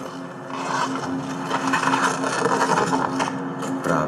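Sled and boots crunching and scraping over broken sea ice, with a steady low hum underneath.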